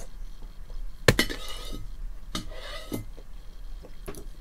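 Table knife cutting a piece of cheese: a sharp clink against a hard surface about a second in, then brief scraping, and a second clink with scraping a little over a second later.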